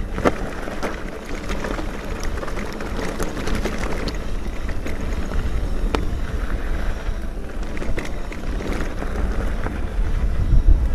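Wind buffeting the microphone over the rolling noise of an e-mountain bike's tyres on a rough trail, with frequent small clicks and knocks from the bike rattling over stones.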